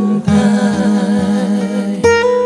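A Paiwan linban (forest-work camp) song: a man sings long held notes with vibrato over acoustic guitar, with a second voice in harmony.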